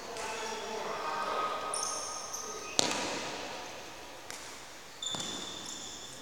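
Badminton racket strings cracking against a shuttlecock twice, about three seconds and five seconds in, each hit echoing in a large hall, with short high squeaks from court shoes on the floor between them.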